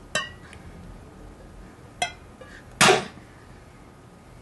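All-metal tactical pen's point being struck into the lid of a steel food can: three sharp metallic knocks, the first near the start, the second about two seconds in and the third, the loudest, just under a second later with a brief ring.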